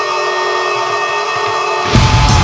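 Intro of a hardcore song: distorted electric guitar with effects holding notes that ring steadily, with little low end. The full band, with heavy drums and bass, comes in right at the very end.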